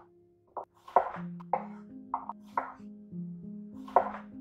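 Chef's knife cutting through a raw potato onto a wooden cutting board: about six sharp knocks at uneven intervals. Soft background music with held notes plays under them.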